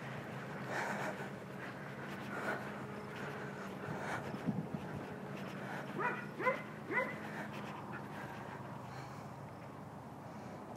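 Doodle (poodle-cross dog) whining: three short, high, falling whines about half a second apart, some six seconds in.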